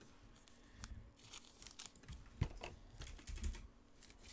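Faint handling of trading cards: soft rustles and light clicks, with one sharper tick a little past two seconds in.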